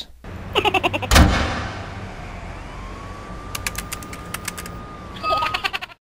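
A cartoonish laughing, chattering voice with a thump about a second in, then a thin drawn-out whistle tone and a run of quick sharp clicks, and a last short chatter near the end.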